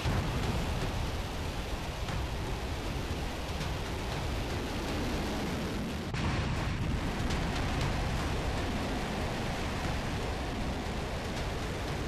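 Rocket motor of an intercontinental ballistic missile at launch: a loud, continuous rushing roar with a heavy low rumble.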